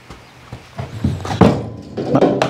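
A few knocks and thuds on a barn floor: a Suffolk Punch draft horse shifting its hooves, and a phone falling to the floor, the loudest knock about a second and a half in.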